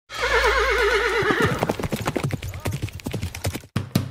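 A horse whinny with a fast wavering pitch, then a quick, even run of hoofbeats clip-clopping, played as a recorded sound effect.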